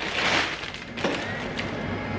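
Tefal two-in-one air fryer running just after being switched on, its fan giving a steady whoosh, with a light knock about a second in.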